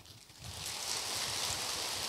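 A steady, high-pitched hiss that comes up about half a second in and holds even.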